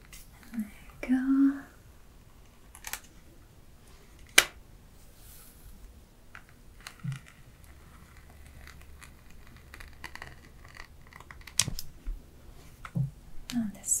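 Hair straightening iron worked close to the microphone: its plates click shut and open on sections of hair, a few sharp, separate clicks spaced several seconds apart over a soft background of handling.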